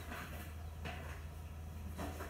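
Faint room tone: a steady low hum under light hiss, with a soft brief rustle a little under a second in.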